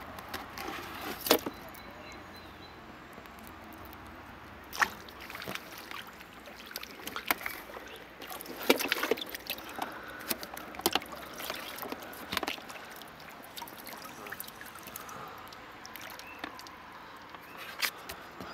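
Water lapping and sloshing around a small fishing boat, with scattered sharp clicks and knocks from handling in the boat.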